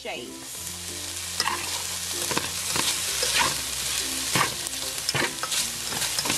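Shrimp frying in a hot nonstick pan, sizzling steadily, with a utensil clicking against the pan now and then as they are stirred.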